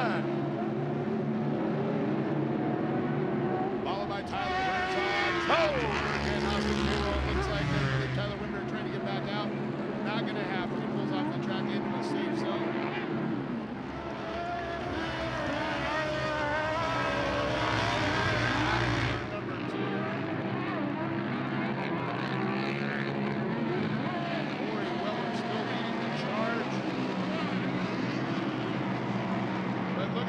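Several off-road UTV race engines revving and changing pitch as they run on a dirt track. The sound is louder and fuller twice, about four seconds in and again about fifteen seconds in, when a machine passes close by.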